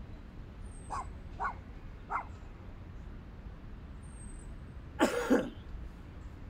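Dogs barking in the park: three short faint barks about a second in, then a louder double bark about five seconds in.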